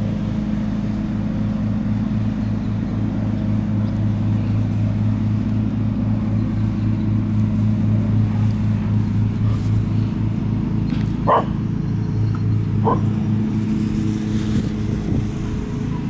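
Two short dog barks, about eleven and thirteen seconds in, over a steady low machine hum like a running engine.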